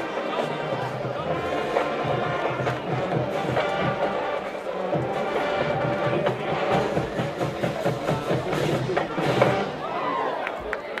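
Band music with horns and drums, a steady beat under the held notes, with crowd voices beneath.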